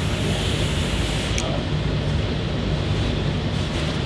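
A long draw on a brass and stainless Fuego mechanical vape mod: a steady airy hiss of breath pulled through the mouthpiece that cuts off about a second and a half in with a small click. Breath blowing out the vapor follows, over a steady low hum.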